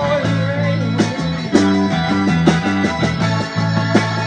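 A live blues-rock band playing an instrumental passage: an electric guitar lead over a stepping bass line and drum kit. A held guitar note wavers in pitch in the first second.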